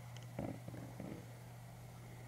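Quiet room tone with a steady low hum, and a soft spoken "and" with a few faint handling sounds about half a second in.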